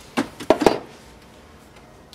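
Three or four short clicks within the first second, then quiet room tone.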